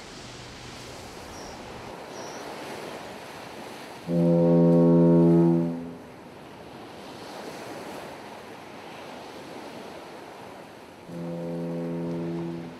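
Ocean surf washing, with two long, steady blasts of a low ship's foghorn about seven seconds apart, the second starting near the end.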